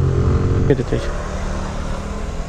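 Suzuki scooter engine running steadily at low speed in slow city traffic, with road and traffic noise around it; a short voice sound comes a little under a second in.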